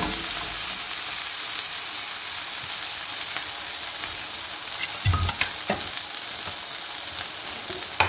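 A corn tortilla coated in red chile sauce frying in hot oil in a skillet: a steady sizzle. A couple of short knocks come about five seconds in.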